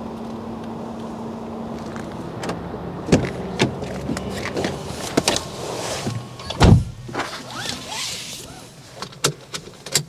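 Someone getting into a Cupra Born: knocks and rustling, then the driver's door shutting with a heavy thud about two-thirds of the way through, followed by a few sharp clicks.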